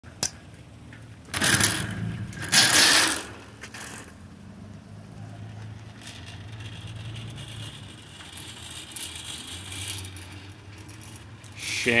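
Metal wire shopping cart rattling and clattering as it is pushed into a cart return, loudest in two bursts between about one and three seconds in. A low steady hum follows.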